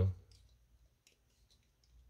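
A few faint light clicks and rustles of cardboard coin holders being handled, in the first half second, then near silence.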